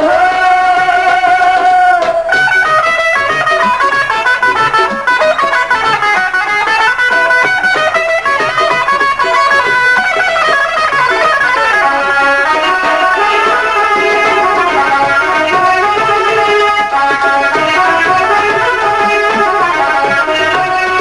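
Punjabi folk stage music: a long held note ends about two seconds in, then a plucked string instrument plays fast rising and falling melodic runs over steady percussion.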